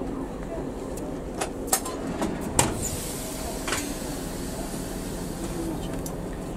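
Russian Railways passenger train rolling slowly to a halt at the platform: a steady low rumble with a few sharp clanks and clicks from the carriages.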